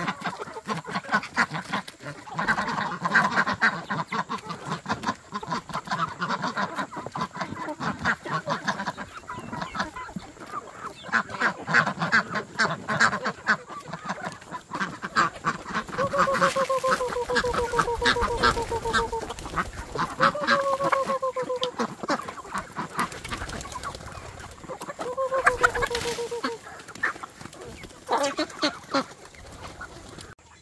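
A flock of chickens and ducks clucking and calling while feeding, with many quick pecking taps. In the second half, three longer calls sound, each falling in pitch.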